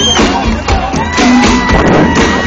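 Live rock band playing, recorded loud through a phone's microphone, with a steady beat about twice a second and crowd noise underneath.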